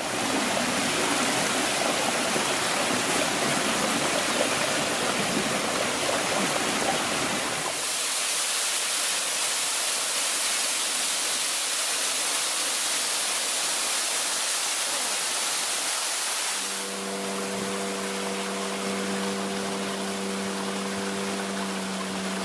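Waterfall: a steady, loud rush of falling water. About seventeen seconds in, a steady boat engine hum joins over the rush of water.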